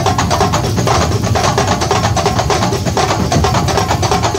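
Kuntulan drumming: a group of terbang frame drums beaten fast and hard together with large jidor bass drums. It is a dense, continuous rhythm of rapid strikes with no pause.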